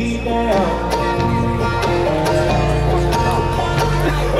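Live bluegrass band playing an instrumental stretch on banjo, mandolin and acoustic guitars: picked melody notes over a steady low bass line that changes note about once a second.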